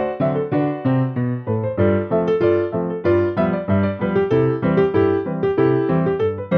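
Piano playing a ragtime two-step at a brisk, even pulse: an alternating bass with off-beat chords in the left hand under syncopated right-hand chords.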